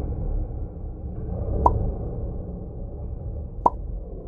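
Cave ambience sound effect: a steady low rumble with two water drops plopping, about two seconds apart.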